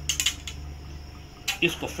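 An arrow being nocked onto a bowstring: a few light clicks of the arrow against the string and arrow rest in the first half second, and one more click about a second and a half in.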